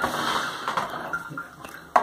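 Triton electric shower running with its cover off, water spraying out of the blown pressure release device at the side of the pump, a steady hiss that dies down after the first second. A sharp click near the end.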